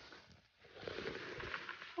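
Faint rustling and crackling of leaves and bramble stems as someone pushes through blackberry undergrowth, starting about half a second in.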